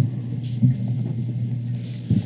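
A steady low hum under faint room noise, with a brief faint murmur about half a second in.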